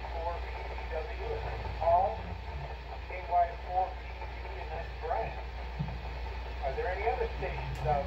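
A voice received over an amateur radio transceiver's speaker, thin and narrow-band, in short phrases over a steady low hum: the station called on the simplex net coming back with an acknowledgement.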